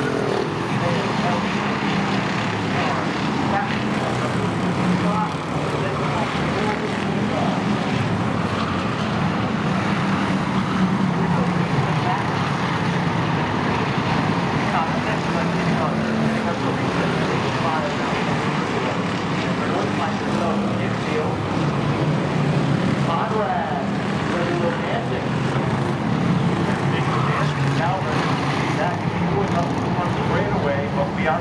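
A pack of Pure Stock race cars running laps at racing speed on a short oval, their engines a steady, unbroken drone.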